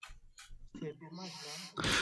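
A man's voice breaking up over a video call with a patchy connection: faint, garbled fragments and a few clicks with no clear words, until normal speech comes back near the end.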